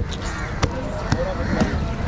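A large fish-cutting knife knocking sharply against the cutting block about every half second as a mullet fillet is cut.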